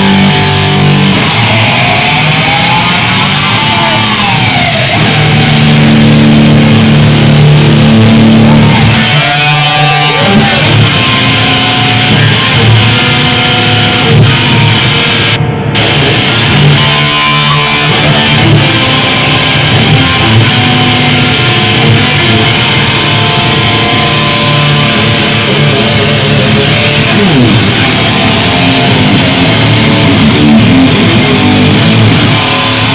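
Electric guitar solo played live through an amplifier, loud and close, with sustained notes and several bends and slides that sweep the pitch up and down.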